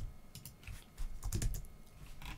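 Computer keyboard keystrokes, a few scattered key presses with a quick cluster of them about a second in.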